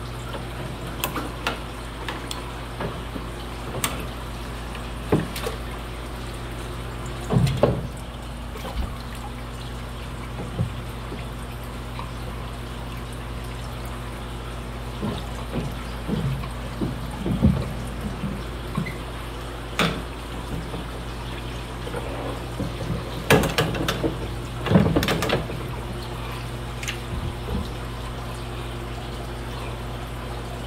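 Water splashing and dripping as a hand net is swept through an aquarium tank to catch fish, in irregular sloshes with louder splashes about 7 seconds in and again around 23 to 25 seconds, over a steady low hum.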